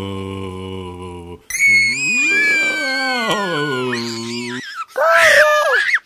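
Spooky voice sound effects: a low held moan, then a high wail sliding down in pitch, and a short loud scream near the end.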